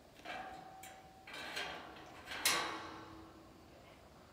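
Steel pipe-panel gate rattling and clanking as the rider works it from the saddle, with a sharp metal clank about two and a half seconds in that rings on for about a second.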